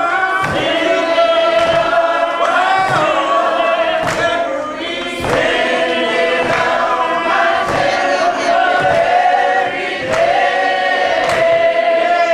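A group of voices singing an old-style gospel song together, holding long notes, with a sharp beat about every 0.7 seconds.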